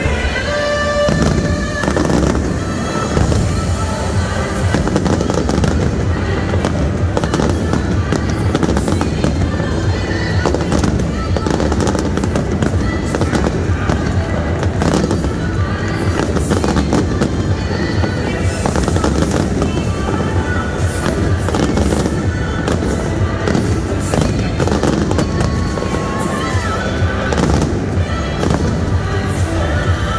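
Fireworks going off in a rapid, continuous barrage of bangs and crackles, with music playing underneath.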